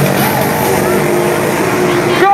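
Engines of two small racing motorbikes running as they ride past along the track, mixed with voices.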